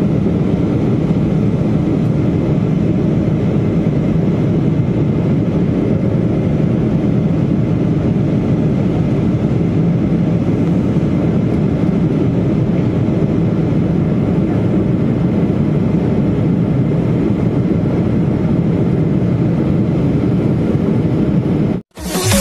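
Steady jet airliner cabin noise, the engines and the rushing air heard from a window seat inside the cabin. It cuts off abruptly right at the end.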